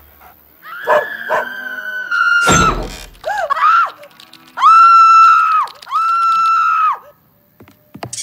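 A cartoon dog howling, then a thud, followed by a woman's short frightened cries and two long, high screams of about a second each.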